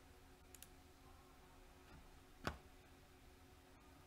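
Near silence with faint computer mouse clicks: two soft clicks about half a second in, then one sharper click about two and a half seconds in.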